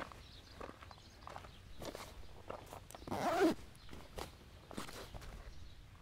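Footsteps on an unpaved dirt road, uneven and fairly soft, with one louder, longer sound about three seconds in.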